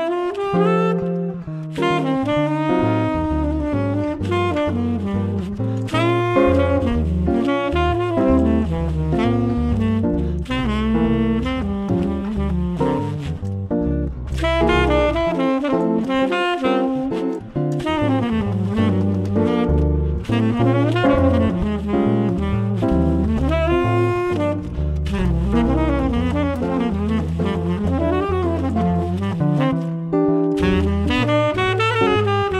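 Jazz tenor saxophone playing a flowing melodic line of phrases with slight pitch bends, over low bass notes stepping along underneath.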